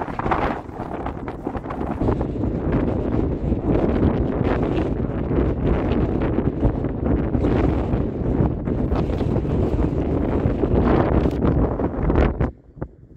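Wind buffeting the microphone: steady, rough rumbling gusts.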